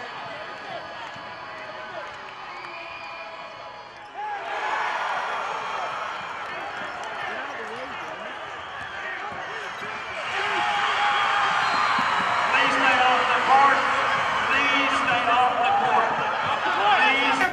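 Basketball arena crowd, steady at first, breaking into loud cheering and screaming about four seconds in and louder still from about ten seconds. The noise is a home crowd and team celebrating a championship win at the final buzzer.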